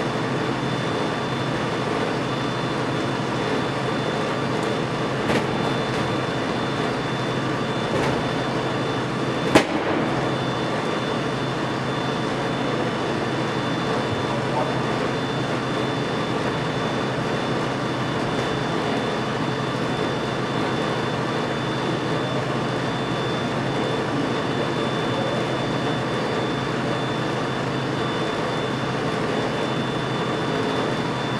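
Steady mechanical hum and hiss of bowling alley room noise, with a constant high faint whine. A few faint knocks come through it, and one sharp click about ten seconds in.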